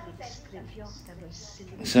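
A pause in a woman's lecture heard over a video call, holding only faint low voice sounds and soft hisses, before she starts speaking again near the end.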